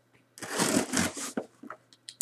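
Rustling of a mail package being handled and opened, starting shortly in and lasting about a second, followed by a few light clicks.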